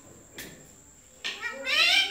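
Rose-ringed parakeet calling: a drawn-out, pitched call that rises and falls, starting a little after a second in. Before it, only one faint tap.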